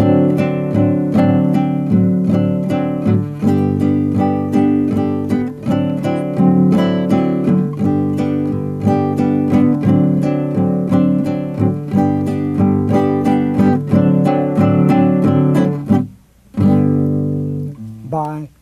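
Nylon-string classical guitar strummed in a steady, even rhythm of chords: a Latin strum pattern that alternates bars of six-eight and three-quarter time. The strumming breaks off briefly near the end, then one more chord rings.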